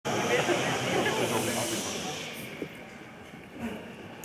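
Audience noise in a large hall that fades away over the first two and a half seconds, leaving only a few small scattered sounds.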